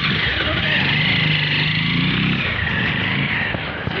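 A motor vehicle driving past on the road, its engine note dropping a little after about two seconds as it goes by.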